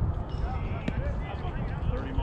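Faint voices of players chatting over a steady low rumble, with one sharp knock about a second in.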